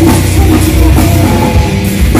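A live nu-metal band playing loudly: electric guitars and a drum kit in an instrumental passage with no singing.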